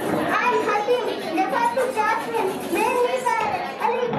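A young child's high-pitched voice speaking lines into a handheld microphone.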